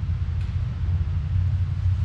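Steady low background rumble, with a faint light click about half a second in.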